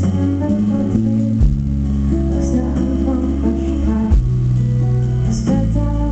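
Live band music led by an acoustic guitar, over sustained bass notes that shift to a new pitch twice.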